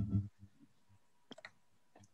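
Computer mouse clicking: a short cluster of quick clicks about a second and a half in, and a faint click near the end.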